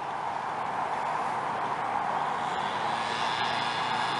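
Steady distant engine noise: an even rushing sound at a constant level, with no distinct strokes or changes.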